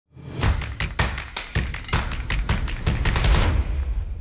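Logo sting of percussion: a quick, uneven run of sharp hits over a deep rumble. The hits stop about three and a half seconds in, and the rumble fades out.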